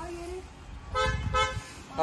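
A vehicle horn gives two short toots in quick succession about a second in, each note held at a steady pitch, over a faint low traffic rumble.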